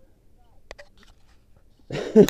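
A person breathing hard after a long climb: mostly quiet, a sharp click about two-thirds of a second in, then a loud gasping breath near the end.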